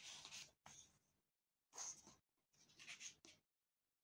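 Faint rustling of paperback book pages as a hand turns and smooths them, in several short rustles with brief pauses between.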